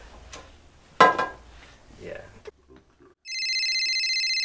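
Novelty hot dog-shaped telephone starting to ring about three-quarters of the way in: a steady, rapidly trilling electronic ring. Before it, a loud short voice call about a second in, then a moment of near silence.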